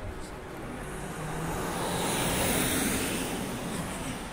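A road vehicle passing close by: tyre and engine noise swelling to a peak midway and fading away again.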